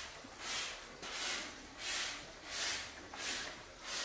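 Rhythmic rubbing hiss, about one and a half strokes a second, repeating evenly throughout.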